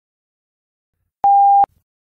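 A single electronic beep: one steady mid-pitched tone about half a second long, switched on and off abruptly, about a second in after silence.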